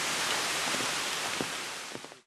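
Small mountain stream rushing over stones, a steady hiss of running water that fades out near the end.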